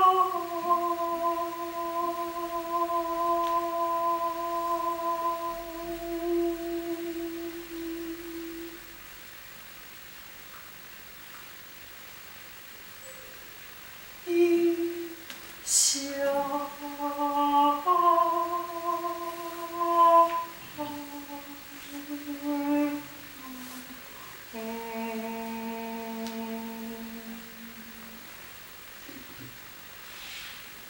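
A woman's unaccompanied wordless singing in long held notes: one steady note fading out over about nine seconds, a pause, then a short run of changing notes and a last lower note held for a few seconds.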